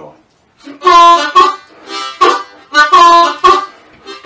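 Blues harmonica playing a short repeating riff of draw notes on holes one and two. The notes begin under a second in and come in two similar phrases.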